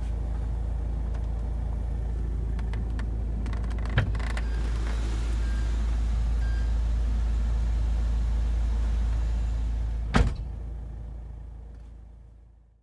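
Mahindra XUV500 engine idling with the car standing still, heard inside the cabin as a steady low drone. A sharp knock comes about four seconds in and a louder one about ten seconds in, and then the sound fades out.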